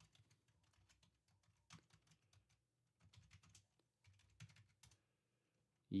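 Faint computer keyboard typing: short runs of keystrokes with pauses between them.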